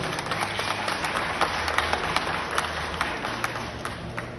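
Audience applauding: many hands clapping at once in a dense, steady patter that fades slightly toward the end.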